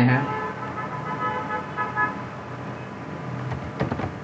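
A vehicle horn sounds steadily for about two seconds. A few computer keyboard key clicks follow near the end as text is typed.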